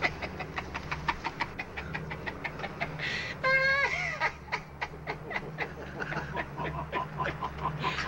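A man laughing heartily in rapid bursts, several a second, with a high-pitched squeal about three and a half seconds in, over a steady low drone.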